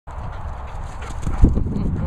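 A greyhound's paws thudding on turf as it turns and sprints off at a gallop, with the heaviest thud about one and a half seconds in, over a steady low rumble.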